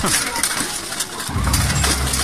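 Weapons striking armour and shields in a close melee of armoured fighters, with voices around. About halfway through, a low steady rumble sets in beneath it.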